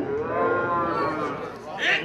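A person's long drawn-out holler, one sustained call that rises and then falls in pitch over about a second and a half, with a short shout starting near the end.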